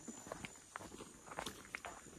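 Footsteps of several hikers walking on a grassy footpath: a string of soft, irregular footfalls.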